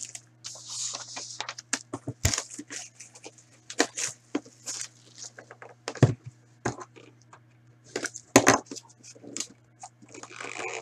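Cardboard trading-card box being opened and handled by hand: scattered taps, clicks, scrapes and rustles of packaging, over a faint steady low hum.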